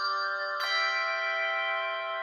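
Handbell choir playing: many bell notes ringing on together, with a new chord struck about half a second in while earlier notes are still sounding.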